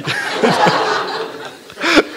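Audience laughing at a joke, the laughter fading away over about a second and a half.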